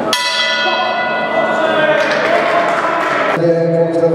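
Boxing ring bell struck once just after the start, ringing out and fading over about two seconds. Music with steady held notes comes in near the end.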